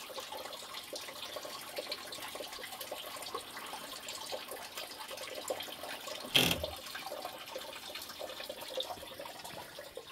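A thin stream of water trickling and splashing from a wooden trough into a log channel, steady throughout, with a brief loud thump about six seconds in.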